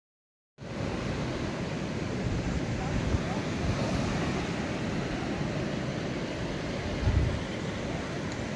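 Sea surf washing and breaking, with wind rumbling on the microphone. The sound cuts in abruptly about half a second in, with a short low wind thump about seven seconds in.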